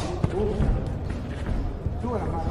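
Voices calling out in a boxing arena, with a few short sharp thuds from the fighters' exchange in the ring.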